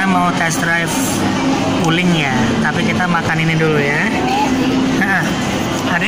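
Speech: people's voices talking steadily, with no distinct sound other than speech.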